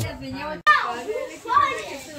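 Several children's voices chattering and shouting over each other in a room. The sound cuts out completely for an instant just after half a second, then the voices resume.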